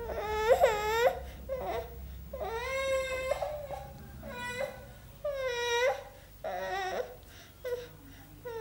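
Toddler crying and whining, a run of drawn-out, high-pitched wails with short breaks between them, about six in all.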